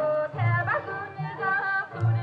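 Korean folk song accompanying a dance: a woman singing a wavering melody over low drum strokes.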